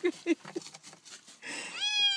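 Tabby cat shut in a plastic pet carrier giving one long, drawn-out meow that starts about a second and a half in and falls slightly in pitch at the end.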